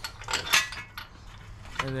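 Light metallic clinks of the steel hub mounting bolts being handled and fitted by hand at the back of a Jeep's front wheel hub, a few separate clicks with the loudest about half a second in.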